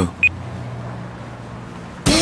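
A single short electronic beep about a quarter of a second in: a phone's voice-search prompt tone, signalling it is ready to listen. Beneath it is a low, steady hum that slowly fades.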